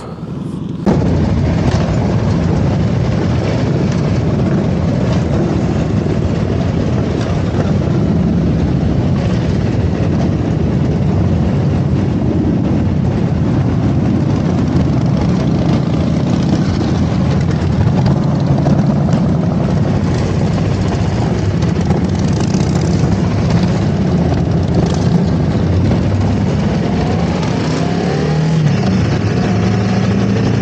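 Cruiser motorcycle engine running steadily while riding, with road noise; it starts abruptly about a second in.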